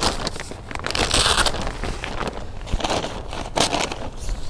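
Velcro hook-and-loop strips being pulled apart and a plastic tarp crinkling as it is peeled off a tent rainfly: irregular rasping, crackling bursts, the longest about a second in.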